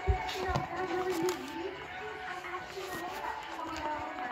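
Music with a sung vocal line playing, with two low thumps in the first half second.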